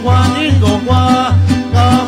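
Loud live band music: a steady bass beat about three times a second under plucked strings and a wavering melody line.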